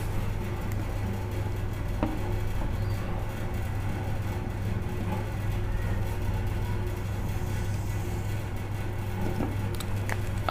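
A steady low hum of room noise, with one faint tap about two seconds in.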